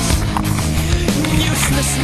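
Rock music soundtrack with a steady drum beat and sung vocals, a line of singing coming in near the end.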